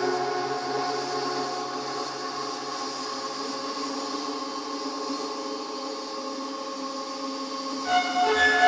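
Techno DJ mix in a breakdown: sustained synth chords held without a beat while the low bass fades away. Near the end a pulsing bass part drops back in and the music gets louder.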